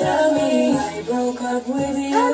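A woman singing a slow melody, holding notes and sliding in pitch between them.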